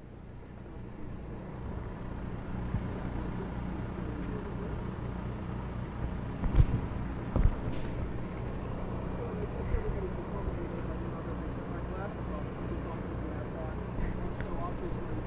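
A steady low mechanical hum, like an idling engine, with two thumps about six and a half and seven and a half seconds in and faint voices in the background.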